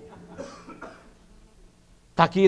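A faint short cough about half a second in, then a quiet pause with a low steady hum.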